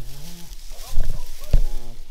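Jersey cow lowing to her newborn calf: two low, drawn-out moos, one at the start and one near the end, with a brief knock between them.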